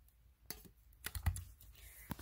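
Light clicks and taps of hair-product bottles being handled and set down, a handful of short sharp clicks between about half a second and a second and a half in.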